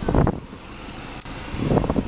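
Low rumbling wind buffeting on the microphone, one gust right at the start and another building near the end, with a quieter stretch and a faint click between.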